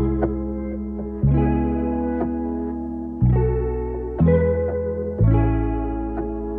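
A music sample from a live-instrument sample pack: chorus-effected guitar chords over a deep bass note. A new chord is struck about every one to two seconds and left to ring down.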